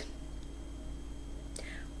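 Quiet room tone with a low steady hum, and a single faint click near the end.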